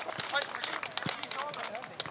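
Footsteps of a group of footballers jogging on a grass pitch, a quick run of short sharp steps, with voices in the background and a dull thud about a second in.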